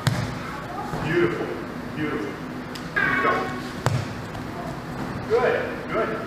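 Judo throw onto a tatami mat: a sharp impact right at the start and a second, sharper slap of a body landing about four seconds in, amid indistinct voices.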